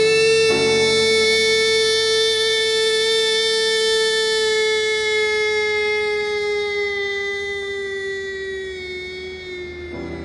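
Music: one long held note, slid up into just beforehand, sustained for nearly ten seconds while its pitch sags slightly and it slowly fades.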